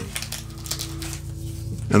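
Faint rustling and crinkling of a pop-up windshield umbrella's reflective fabric as it is folded by hand, over soft background music holding low steady notes.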